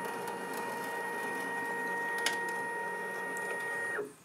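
Bambu Lab P2S Z-axis stepper motors driving the print bed down its lead screws: a steady motor whine with one brief click a little past halfway, stopping just before the end as the bed reaches the bottom. This is the bed being run along freshly greased screws to spread the grease over the threads.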